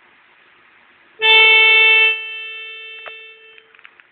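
A single loud, steady musical note with a keyboard-like tone that starts suddenly about a second in, is held for about a second, then fades out over the next second and a half.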